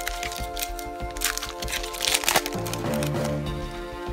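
Foil Yu-Gi-Oh! booster pack being crinkled and torn open, with sharp crackling bursts about a second in and again around two seconds in. Steady background music plays throughout.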